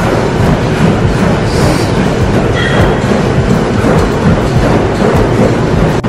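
Treadmills running in a gym with people jogging on them: a steady, loud mechanical rumble.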